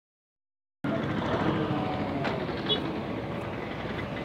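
Busy roadside street noise, mostly traffic with a mix of distant voices, starting abruptly about a second in. There is a sharp click near the middle.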